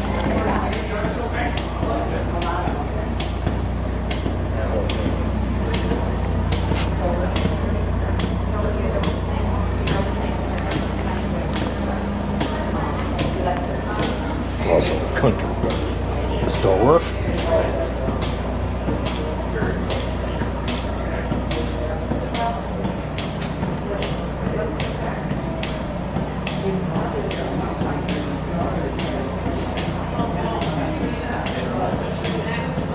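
Indistinct voices of people talking in the background over a steady low hum, with a faint regular ticking throughout. A few louder voice sounds stand out about halfway through.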